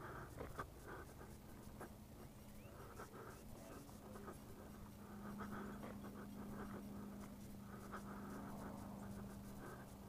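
Footsteps scuffing and crunching on a dirt and gravel path, irregular and fairly quiet, over a faint steady low hum.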